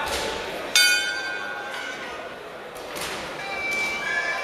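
A boxing-ring bell struck once, about a second in, ringing and fading over about two seconds, which marks the start of the round. Near the end a high, reedy Thai oboe starts to play the fight music.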